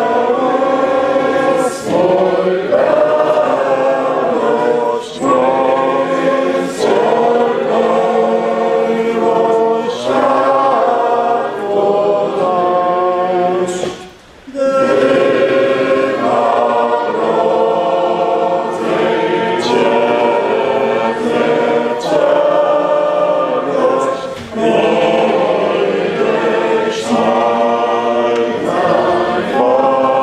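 A congregation singing a hymn together, in sustained sung phrases with a short break about halfway through.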